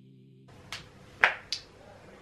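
Soft background music ends about half a second in. Then come three short, sharp clicks over room noise, the second one loudest.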